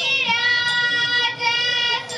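A girl's voice singing a Thiruvathirakali song in long, steady held notes, with a short break for breath a little over a second in.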